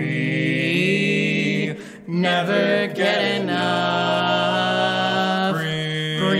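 A barbershop quartet singing a cappella in close harmony: a long held chord, a short break about two seconds in, then another long sustained chord.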